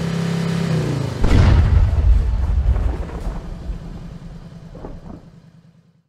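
End-card sound effect: a steady low hum, then a sudden loud boom just over a second in that rumbles on and slowly dies away.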